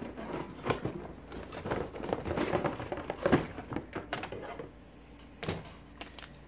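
Rustling and clicking as a wire bingo cage is lifted out of its cardboard box: cardboard and packaging scraping, with light rattles and clicks from the wire cage and one sharper knock about five and a half seconds in.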